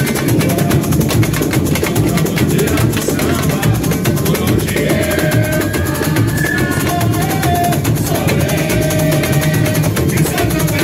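A samba school's bateria drums a continuous samba beat under a samba-enredo sung into a microphone, with plucked cavaquinho-like strings in the mix. The singer holds long notes in the second half.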